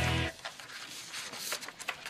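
A guitar music sting cuts off about a third of a second in. Then comes the light crackle and rustle of paper sheets and a large paper envelope being handled and shuffled.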